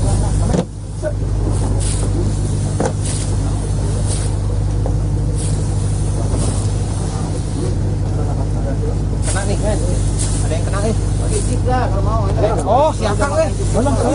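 Steady low drone of a fishing boat's motor running, with scattered short clicks over it.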